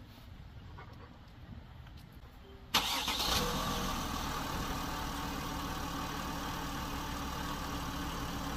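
A Mercedes Sprinter's three-litre diesel engine cranked and starting about three seconds in, catching at once with a short burst, then settling into a steady idle.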